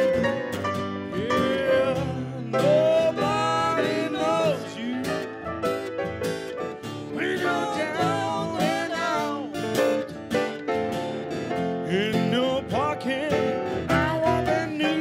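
Live acoustic music: a steel-string acoustic guitar strummed and picked, with a grand piano accompanying. A man's voice sings phrases across the guitar and piano.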